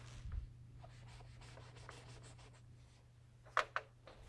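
Chalk on a blackboard: a run of short scratchy writing strokes, then two sharp taps near the end.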